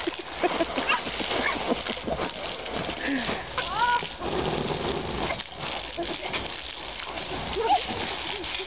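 Water spraying and pattering onto a trampoline mat in a steady hiss, with short high-pitched squeals and calls from children and a few soft knocks of feet on the mat.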